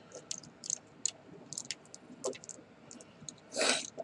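Small plastic clicks and ticks as the joints and parts of a Transformers action figure are moved and repositioned by hand, scattered and faint, with a brief breathy hiss near the end.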